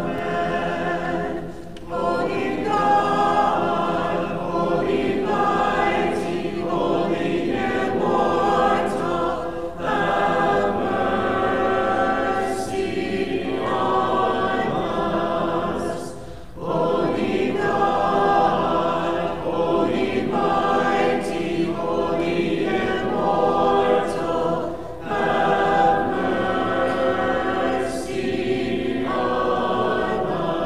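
Small mixed choir singing Orthodox liturgical chant a cappella, in long phrases broken by short pauses for breath.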